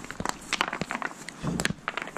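Irregular crunching clicks of footsteps on river cobbles and gravel.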